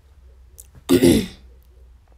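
A woman clearing her throat once, a short loud two-part burst about a second in.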